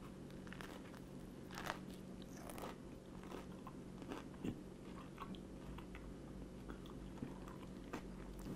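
A man biting into and chewing a peanut butter and jelly sandwich: faint, irregular small clicks and crunches of chewing over a low steady hum.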